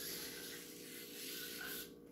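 Gloved hand wiping wet acrylic paint across the surface of a painted board: a soft, steady rubbing hiss that stops just before the end.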